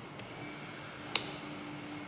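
Quiet room tone with a faint steady hum, broken by a single sharp click a little past a second in.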